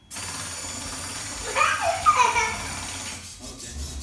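UBTECH Jimu robot's geared servo motors driving its tracks as it spins in place: a steady mechanical whirring whine that starts suddenly and stops a little over three seconds later. A child's voice calls out briefly in the middle.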